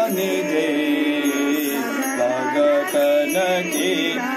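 A devotional Hindu bhajan being sung, the voice holding sustained notes and sliding between them over musical accompaniment.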